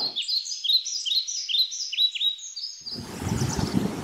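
Birdsong: a rapid run of short, high chirps, about three a second and layered at a few pitches, lasting nearly three seconds and then stopping, followed by faint steady background noise.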